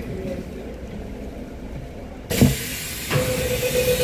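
Metro train standing at a station: a low rumble, then a sudden loud hiss of air with a thump about two seconds in as the doors open, followed by a steady tone from about three seconds in.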